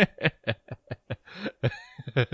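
A person laughing in a run of short, quick bursts, about four or five a second, ending in a breathy exhale.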